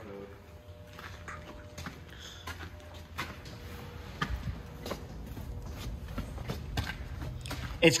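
Footsteps on a concrete floor littered with debris: irregular scuffs and taps, with a low rumble underneath.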